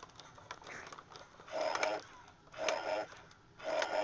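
Chrome toy robot's motors whirring in three short bursts about a second apart.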